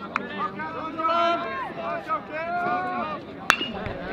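Players and spectators shouting and chattering with drawn-out calls. About three and a half seconds in, the sharp ping of a metal baseball bat striking a pitched ball, with a brief ring after it.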